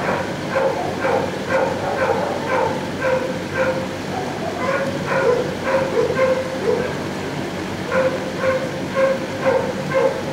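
Dogs barking in a shelter's kennel block, a steady run of short barks about two a second with no break.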